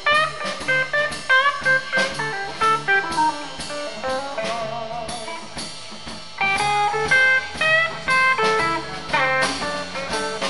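Live electric blues band playing a shuffle: an electric lead guitar plays short phrases with bent notes over bass and drums.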